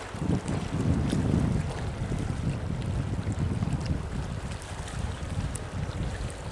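Wind buffeting the microphone in uneven gusts, a heavy low rumble, over small waves lapping on the rocky shore of a lake.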